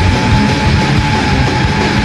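Gothic metal band playing live: heavy distorted bass and guitar over drums, with one high note held until near the end.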